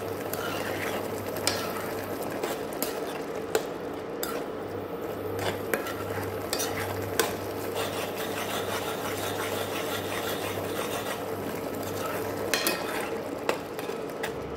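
Metal ladle stirring and scraping a wet, syrupy grated-radish halwa around an aluminium kadai. Irregular sharp clicks come where the ladle knocks against the pan.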